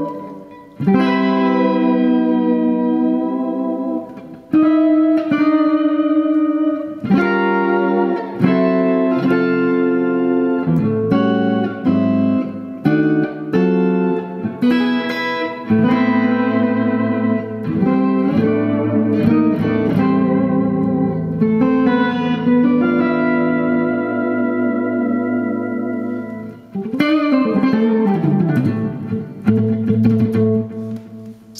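Electric guitar chords played through a DigiTech Whammy DT in polyphonic octave mode, each chord sustained for a second or two with an added octave doubling it. Near the end the pitch sweeps downward in a long glide.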